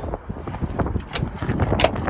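Footsteps on dry dirt and wind buffeting the microphone, with a scatter of sharp clicks and knocks.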